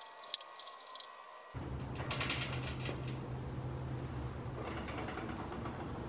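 Parts and hand tools being worked during reassembly: a few light clicks at first, then from about a second and a half a steady low hum under bursts of rapid mechanical clicking.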